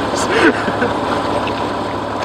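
Subaru Forester's flat-four engine idling steadily, with faint voices briefly in the first half second.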